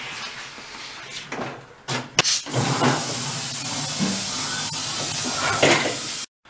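Compressed air hissing steadily as an air-operated scissor lift table raises a snow blower, starting with a couple of sharp clicks about two seconds in; quieter handling noise of the machine comes before it.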